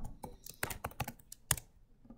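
Computer keyboard typing: about eight separate key clicks at an uneven pace.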